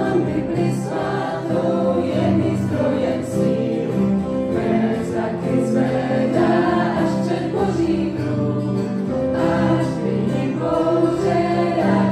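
A youth choir singing a hymn in a sped-up arrangement, several voices together in a steady run of sung phrases.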